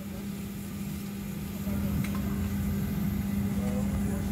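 Steady cabin drone of a Boeing 737-800 in cruise, engine and airflow noise with a low steady hum, growing slightly louder about a second and a half in. Faint voices sit under it.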